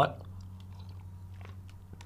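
A person drinking milk from a glass: a few faint, small mouth and swallowing sounds.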